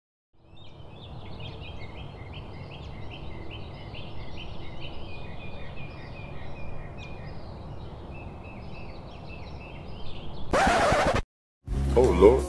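Morning bird ambience: small birds chirping in quick, repeated notes over a steady outdoor hiss. It ends near the close with a loud, brief burst of sound.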